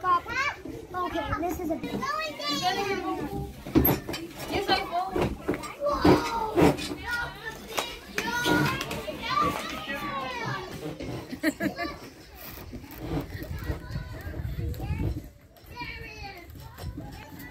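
Children playing: excited, high-pitched children's voices calling and chattering, with a couple of sharp knocks about four and six seconds in.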